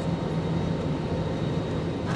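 Jet airliner cabin noise heard from a window seat: a steady rush of engine and airflow with a low, even hum.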